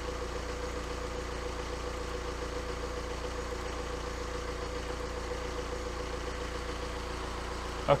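Diesel car engine idling steadily, an even running sound with a steady hum over it.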